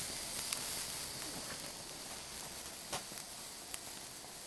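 Alcohol burner flames (Trangia-type spirit burners) burning with a faint steady hiss, with a few faint ticks.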